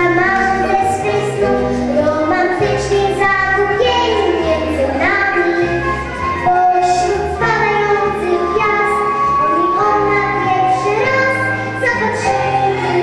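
A young girl singing a song into a handheld microphone, amplified, over instrumental backing music with steady bass notes.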